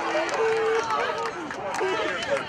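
Several voices shouting and cheering over one another in celebration of a goal, outdoors at a football pitch.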